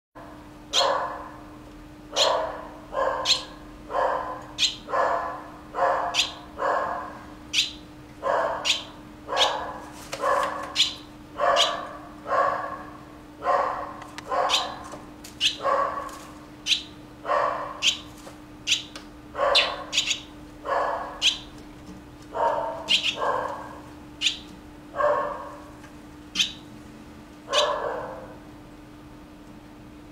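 An animal calling over and over, roughly once a second, each call short with a sharp start, over a steady low hum.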